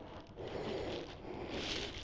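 Soft rustling of a large crocheted granny-square quilt being lifted and spread out by hand, in two faint swishes.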